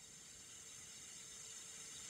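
Near silence: a faint steady hiss with a faint steady hum.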